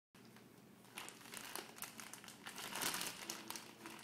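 Thin clear plastic bag crinkling in irregular bursts as a Bengal cat paws at it to get a meat stick out. It starts about a second in and is loudest about three seconds in.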